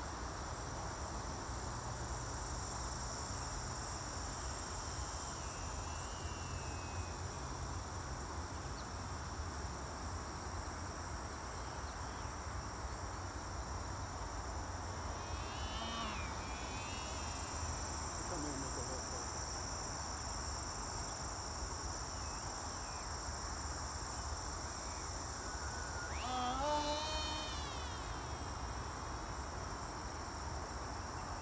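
Steady high chirring of crickets, with the whine of a small RC flying wing's 1507 2800 kV brushless motor and propeller passing twice, about halfway through and again near the end. The second pass is the loudest and drops in pitch as the plane goes by.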